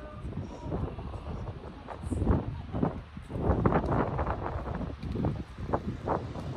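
Wind buffeting the microphone in irregular gusts, a low rumble with louder surges.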